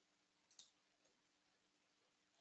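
Near silence with a single faint computer mouse click about half a second in.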